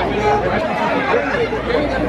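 Several people talking over one another at close range: indistinct crowd chatter.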